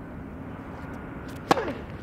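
A tennis ball struck hard with a racket about one and a half seconds in: a single sharp crack with a brief ring after it.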